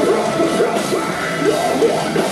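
A live metalcore band playing, with distorted guitars, drums and yelled vocals over them.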